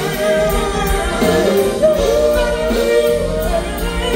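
A soul ballad performed live: a male lead voice sings long, sliding notes over a backing band with a steady drum beat.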